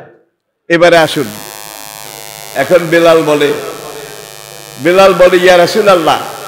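A man's voice speaking in short phrases through a public-address system, with a steady electrical hum and buzz from the amplification running underneath between phrases. The sound cuts out completely for a moment at the start.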